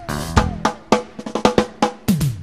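Live cumbia band's drums and percussion playing a fill of quick, irregular hits, with only faint pitched sound from the other instruments underneath.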